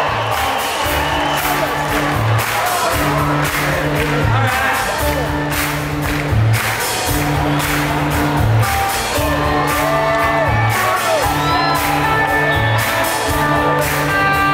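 Electric bass guitar playing a repeating riff on its own, the same figure coming round about every two seconds, with audience whoops and cheers over it.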